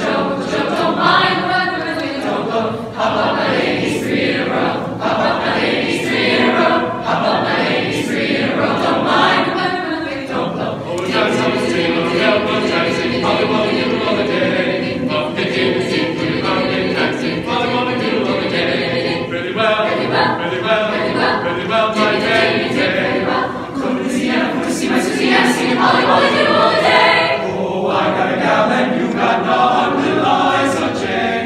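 Mixed-voice chamber choir singing a cappella, continuously and at a steady loudness.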